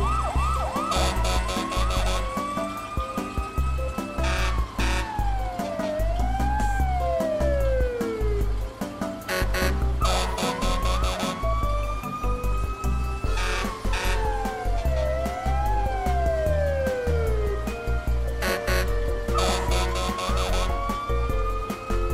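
Cartoon fire-engine siren sound effect wailing up and down in pitch, the same pattern repeating about every ten seconds, over background music with a heavy steady beat.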